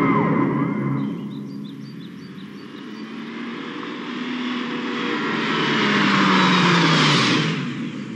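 A loud rushing sound fades out over the first two seconds. Then a car is heard driving in: its sound swells for a few seconds, the engine note falls, and it cuts off shortly before the end.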